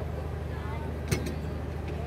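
Indistinct murmur of voices over a steady low hum, with a single sharp knock about a second in.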